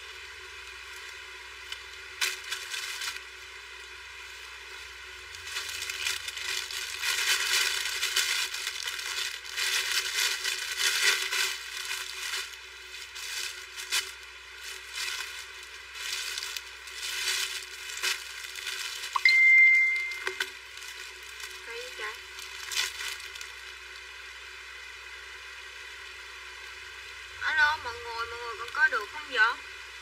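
Plastic bags and clothing rustling and crinkling in irregular bursts as a pile of bagged garments is rummaged through, busiest in the middle stretch. A short, steady, high beep sounds about two-thirds of the way in.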